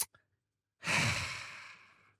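A brief click, then about a second in a person lets out one long sigh that is loudest as it starts and fades away.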